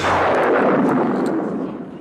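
A sudden loud, noisy boom-like burst that starts at once and dies away over about two seconds: a film sound-effect stinger.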